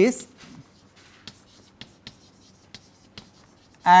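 Chalk writing on a blackboard: faint, irregular clicks and taps of the chalk as words are written out.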